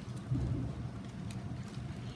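Steady low room hum with faint rustling and handling of a small hardcover book as it is set aside and another is picked up.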